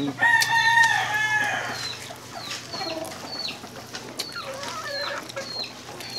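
A rooster crowing once near the start: one long call of about a second and a half that falls away at the end, followed by fainter, shorter fowl calls. A small bird chirps repeatedly in the background.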